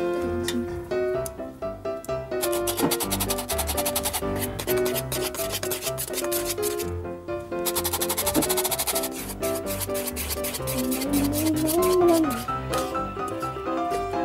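Metal flour sifter rasping rapidly as flour is sifted into the dough, in two long runs with a short break about seven seconds in, over light background music.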